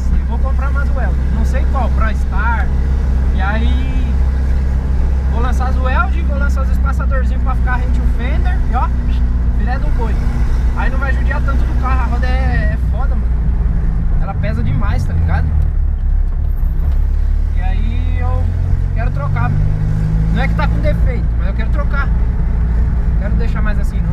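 Turbocharged car engine droning as heard from inside the cabin while driving, its revs shifting down and then climbing again about two-thirds of the way through.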